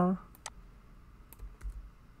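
A handful of separate computer-keyboard key clicks, spaced irregularly, as keys are tapped while editing text; the end of a spoken word is heard at the very start.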